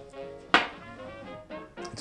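Soft background music, broken about half a second in by a single sharp knock as a small glass is set down hard on the wooden bar top.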